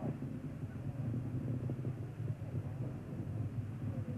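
Steady low hum and hiss of a broadcast audio channel with no voice on it.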